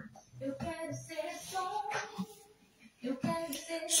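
A woman's voice singing softly, pausing briefly about two and a half seconds in before picking up again.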